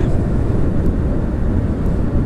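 Steady wind rush and running noise from a moving Kawasaki ZX-6R motorcycle, heard on the bike's own microphone, heavy in the low end.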